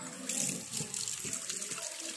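Water running steadily from a tap, starting right at the beginning.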